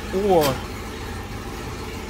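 Car engine idling steadily with a low, even rumble.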